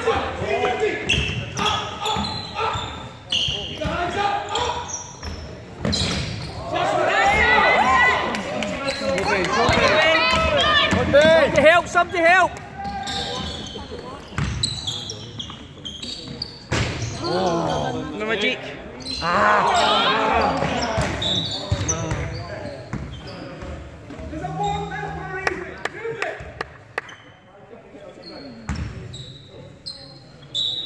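Basketball bouncing on a sports-hall court, with repeated knocks of the ball and players moving, echoing in the large hall.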